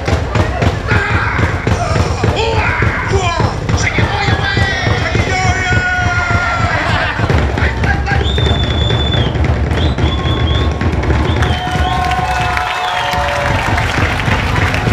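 Fast, loud drumming on several drums, with shouted calls over the beat. The drumming drops away briefly near the end, then starts again.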